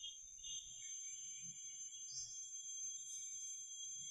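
A quiet pause filled with a faint, steady, high-pitched electronic whine: a few thin tones held level, with low room hiss beneath.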